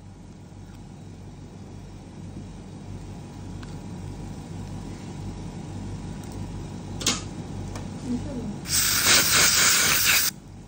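Dental air-water syringe blowing air onto the teeth: a loud hiss starting near the end and lasting about a second and a half, then cutting off suddenly. Before it there is only a steady low hum and a single click.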